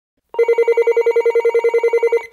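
Telephone ringing: an electronic ringer's rapid trill, one tone pulsing about twelve times a second, starting about a third of a second in.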